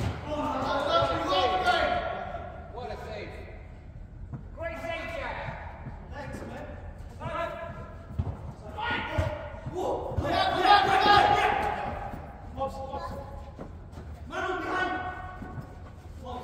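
Players' shouted calls to one another, echoing in a large hall, with occasional thuds of a football being kicked on the turf.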